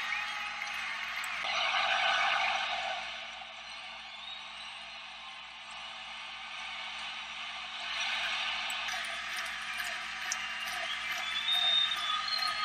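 Outdoor ambience on an open playing field: a steady hiss with faint distant voices. It swells briefly about two seconds in and again around eight seconds.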